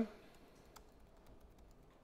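Computer keyboard typing: a run of faint, irregular key clicks.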